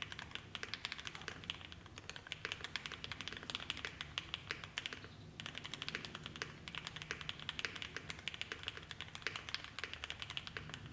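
Fast typing on a 60% mechanical keyboard with an FR4 plate and lubed JWK Black linear switches (58.5 g) fitted with Project Vulcan 0.30 mm Poron and PET switch films: a quick, even run of keystroke clacks, with a brief lull about halfway through.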